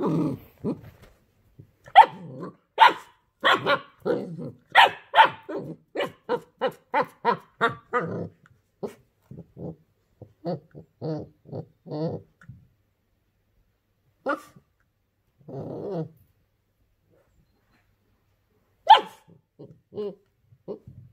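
Puppy barking at a plastic ring toy: a few loud barks, then a quick run of short yips, about four a second, that grow softer and trail off. After a pause comes a longer low growl, then one last loud bark near the end.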